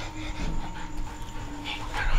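German shepherd dog panting, with a faint steady tone underneath.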